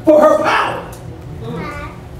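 A man preaching into a handheld microphone, with a short high-pitched vocal call near the end.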